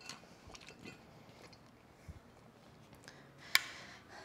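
Faint clicks and mouth sounds of drinking from a water bottle and handling it, then one sharp knock near the end as the bottle is set down on the hardwood floor.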